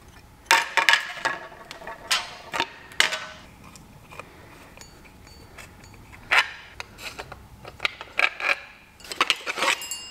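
Irregular clinks, clacks and scrapes of a power steering pump and its 3D-printed plastic mounting brackets being unbolted with a hand tool and pulled apart by hand, with a few sharp knocks.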